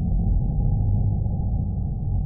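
Low, dark ambient drone: a steady deep rumble with no clear melody, part of the background score between stories.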